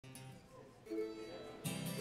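Acoustic guitar and mandolin played quietly: a couple of ringing plucked notes about a second in, then a louder strummed chord near the end.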